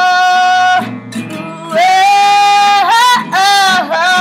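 A woman singing long held notes over an acoustic guitar. The voice drops out just before a second in, leaving the guitar alone for about a second, then comes back with a few dips in pitch.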